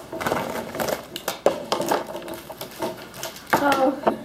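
Short indistinct bursts of talk, loudest near the end, over sharp little clicks and taps of felt-tip markers and paper on a wooden tabletop as the markers are put down.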